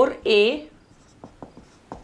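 A woman's voice says a short word, then a whiteboard marker writing: faint short ticks and strokes of the felt tip on the board.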